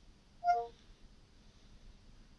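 Short electronic chime from the Cortana app through the phone's small speaker, a cluster of a few tones lasting about a quarter second, about half a second in. It marks the app opening its 'What's your note?' prompt to listen for the note.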